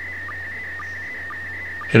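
Slow-scan TV audio in PD120 mode: a steady high tone broken about twice a second by a short, lower-pitched blip, the line-sync pulses of the SSTV picture signal.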